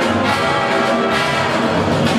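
Jazz big band playing live at full volume, its brass section of trumpets and trombones sounding over the rhythm section.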